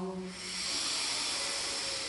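A chanted mantra note fades out, then a long, steady hissing breath is drawn in for about two seconds: the deep inhale between repetitions of the mantra.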